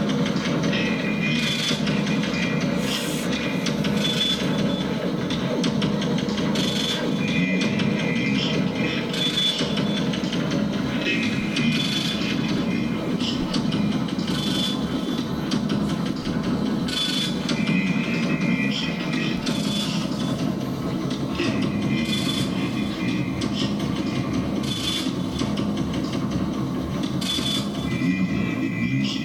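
Experimental electronic noise from a looped feedback rig run through delay and echo effects pedals: a dense, steady drone with a short high tone that recurs every couple of seconds.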